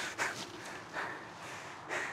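A man's faint breathing as he moves, three soft puffs of breath about a second apart over a low steady hiss.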